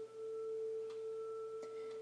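A steady sustained tone held at one pitch, with a fainter higher overtone above it: a background drone laid under the spoken recording. A few faint short clicks sound over it.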